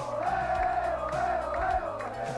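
A group of men singing a chant together in chorus over music with a steady beat, as a football team celebrates.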